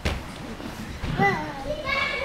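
Children's voices at play in a large hall, with a single thud right at the start.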